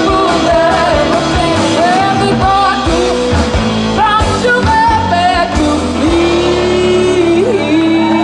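Live band playing: a woman singing lead over electric guitar, upright bass and drum kit. A long held note comes in about six seconds in.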